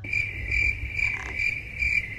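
Cricket chirping sound effect: a high, steady trill that pulses throughout.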